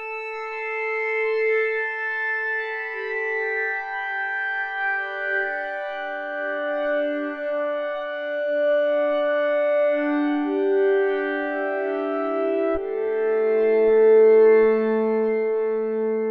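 u-he Zebra HZ software synthesizer playing the Frost preset 'SY Sigurd's Demise', a reverse tape loop synth, in slow held chords whose notes shift every second or two. About thirteen seconds in, a lower note enters and the sound swells, with a few faint clicks.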